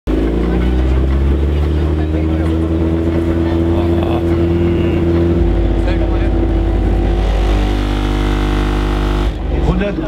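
Opel Corsa C's car-audio subwoofer system playing a loud, deep, steady bass tone with many overtones for an SPL (dB) measurement. The tone steps to a different bass pitch about halfway through and cuts off suddenly near the end. The run is measured at 151.6 dB.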